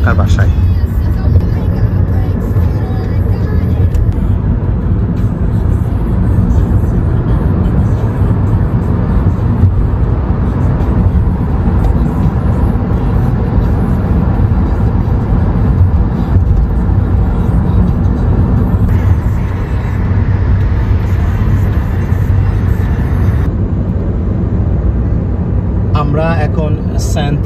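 Steady road noise inside a moving car's cabin: a low rumble of tyres and engine at highway speed.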